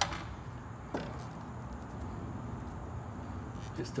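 Two short clicks about a second apart, from hands handling the plastic interior door trim of an Audi R8, over a steady low hum.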